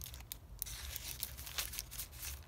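Paper rustling and crinkling as the pages and paper flaps of a handmade paper journal are handled and turned: a string of short, sharp rustles.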